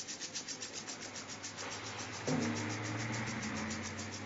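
Crickets chirping in a steady rapid pulse, about ten chirps a second. A low, steady held tone joins them a little over two seconds in.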